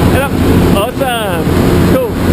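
Steady loud drone of a jump plane's engine and propeller heard inside the cabin, with a man's voice talking over it in short bursts.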